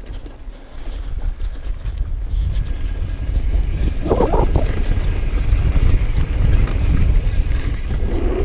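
Wind buffeting an action camera's microphone over the rumble and rattle of a downhill mountain bike rolling fast on a dirt trail, growing louder about two seconds in as speed builds. A short, louder rasping burst comes about four seconds in.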